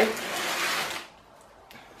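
Plastic bags of diamond painting drills crinkling as they are handled and set down, for about a second before it goes quiet.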